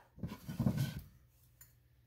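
A person's short breathy vocal sound lasting about a second, followed by a faint click.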